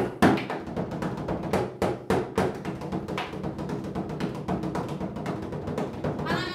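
Bodhrán, an Irish frame drum, beaten in a quick, steady rhythm, its beats ringing low under the strikes.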